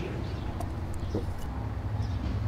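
A hushed pause: a low, steady hum with a few faint, short clicks.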